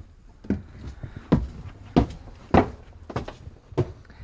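Footsteps climbing a steep staircase: about six separate thuds, a little over half a second apart.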